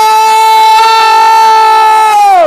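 A woman's long, loud scream of excitement, held at one high pitch and dropping away near the end.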